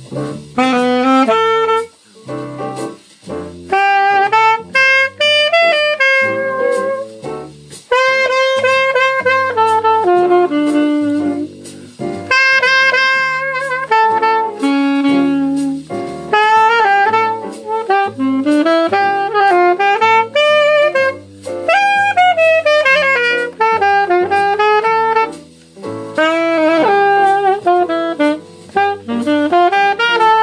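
Vito alto saxophone, a Yamaha-built student model, played solo: a jazzy melody in phrases broken by short breath pauses, with quick runs up and down the scale.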